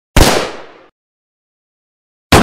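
A single loud, sharp bang, a cartoon sound effect, that dies away within about three quarters of a second, followed by dead silence.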